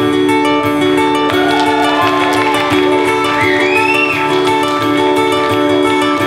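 Live folk-band music: guitar strumming over sustained chords, with a few gliding high notes in the middle.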